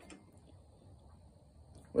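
A quiet pause: faint steady background noise, with a couple of soft clicks near the start and again just before the end.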